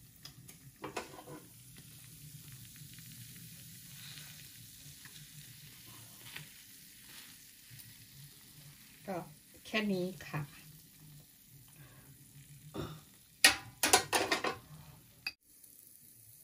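Faint, steady sizzling of melted cheese in a raclette grill pan, with a metal fork scraping the cheese out onto potatoes. There are a few sharp metal clinks near the end.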